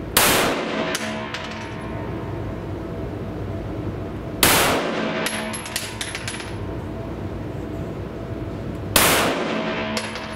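Three single shots from a Glock 17 9 mm pistol, about four and a half seconds apart, each echoing briefly off the walls of an indoor range. A few light clinks follow the second shot, over a steady background hum.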